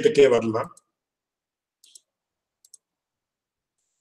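A man's voice trails off in the first second, then near silence broken by two faint computer mouse clicks about a second apart.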